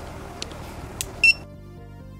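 Two light clicks as the lid of a JCID P13 NAND programmer is shut, then a short high beep in a few quick pulses as the programmer detects the NAND chip, over soft background music.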